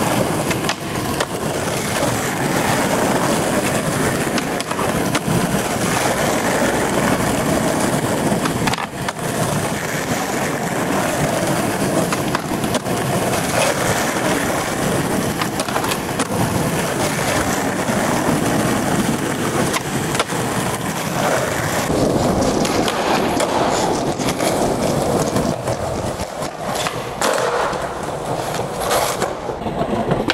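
Skateboard wheels rolling over rough concrete in a steady roar, with a few sharp knocks of the board against the ground along the way.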